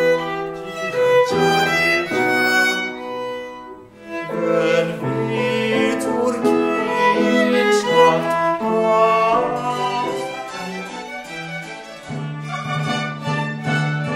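Baroque music led by a violin. It breaks off briefly about four seconds in, and a new passage begins.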